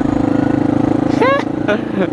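Motorcycle engine running at a steady pitch while riding, heard from the rider's helmet camera. A short laugh from the rider comes a little past halfway.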